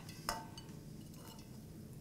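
A single light metal clink with a short ring, about a third of a second in: a metal spatula knocking against the wok.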